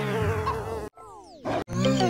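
Cartoon fly buzzing, cut off abruptly about a second in. A brief falling sweep follows, then synthesizer music starts near the end.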